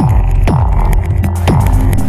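Electronic music: a steady deep droning bass with a falling-pitch hit about twice a second and fast ticking percussion above it.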